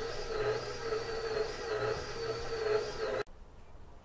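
KitchenAid tilt-head stand mixer running, kneading bread dough with its dough hook: a steady motor hum with a whine that wavers in pitch about twice a second as the hook turns. It cuts off abruptly about three seconds in.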